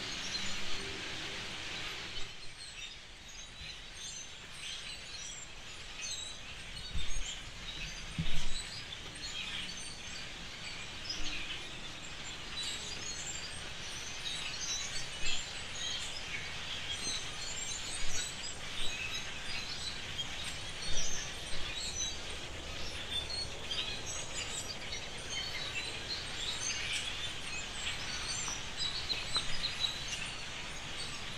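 Many birds calling at once in a dense, continuous chatter of short overlapping chirps, with a few brief low thumps near the quarter mark that are the loudest sounds.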